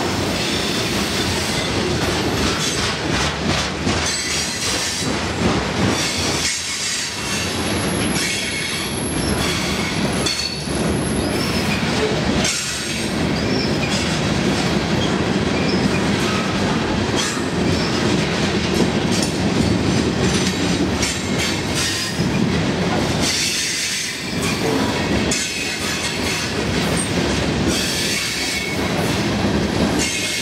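Freight train cars rolling past close by: a steady rumble of steel wheels on the rails with clicking over the rail joints. A thin high wheel squeal comes and goes about eight to eleven seconds in.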